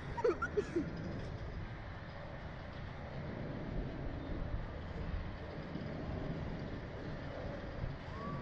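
Steady rushing wind over the microphone of a camera riding on a Slingshot bungee-launch capsule as it swings and bounces in the air. A few short vocal sounds from a rider come in the first second.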